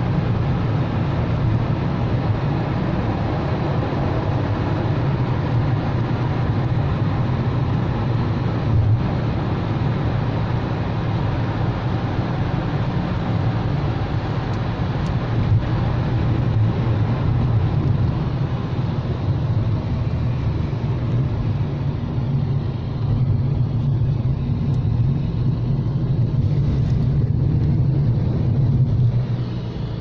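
Road noise inside a moving car's cabin: a steady low hum of engine and tyres as the car drives through a road tunnel and out onto an open expressway.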